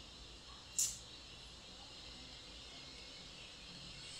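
Faint room tone with a steady background hiss. Just under a second in comes one short, sharp hissing noise.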